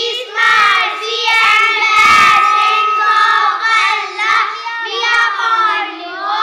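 Children singing together, several voices at once, with a steady high tone held under the first half.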